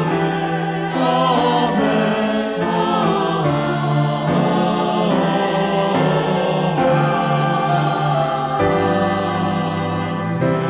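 Choral music: a group of voices singing sustained chords in a worship song, the harmony shifting every few seconds.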